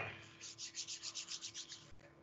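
Hands rubbing together quickly in a rapid, even back-and-forth of about eight strokes a second, after a single click.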